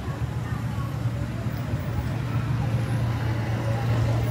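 Street traffic: a steady low rumble of car engines in a slow-moving queue, with no distinct events.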